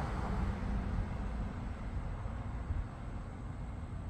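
A pickup truck driving past on the road, its engine and tyre noise fading as it moves away, over a steady low rumble.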